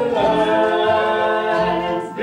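Live old-time country band song: voices singing one long held note in harmony over acoustic guitar and upright bass, the note breaking off right at the end.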